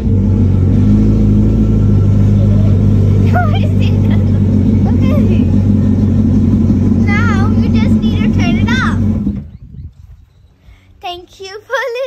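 2022 Yamaha WaveRunner VX Cruiser HO's 1.8-litre four-stroke engine starting and idling with a loud, steady hum, then switched off suddenly about nine and a half seconds in. A child's voice speaks over it and after it stops.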